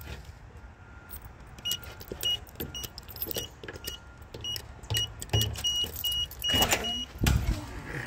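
A ring of keys jangling, with a run of short high beeps all at one pitch, quickening toward the end. A heavy low thump comes about seven seconds in as the door opens.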